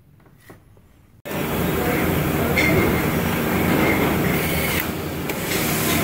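Quiet room tone, then an abrupt cut to loud, steady factory-floor machinery noise on a production line. A thin, high steady whine runs through the middle of it for about two seconds.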